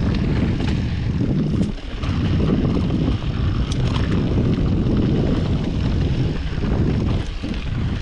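Wind buffeting a GoPro 8's microphone over the rumble and rattle of a Yeti SB5 full-suspension mountain bike rolling fast down a dirt trail, with a few sharp ticks about halfway through.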